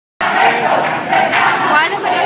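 Loud crowd of street protesters, many voices shouting over one another.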